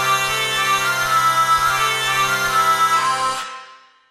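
Sampled hurdy-gurdy played from a keyboard: a steady drone under a short melody line that moves between notes. It stops about three and a half seconds in and dies away.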